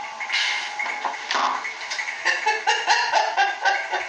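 A dog yipping and whining in short, quick calls: a couple early on, then a fast run of them through the second half.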